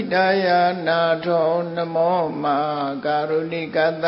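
A single voice chanting Pali verses in a steady, melodic recitation tone, holding long syllables on a near-constant pitch with small rises and falls.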